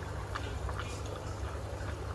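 Aquarium aeration: a steady low hum with faint scattered ticks of fine air bubbles in the tank water.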